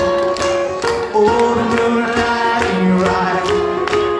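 Instrumental break in a live acoustic song: a harmonica plays a sustained, bending melody over a strummed acoustic stringed instrument keeping a steady rhythm.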